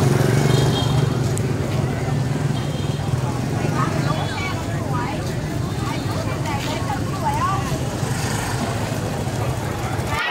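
Street-market ambience: scattered voices of shoppers and vendors talking over a steady low engine hum, which weakens about four and a half seconds in.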